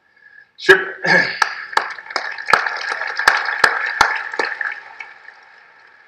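Audience applauding, beginning about half a second in, with sharp individual claps about three a second standing out over the general clapping. It fades away over the last second or two.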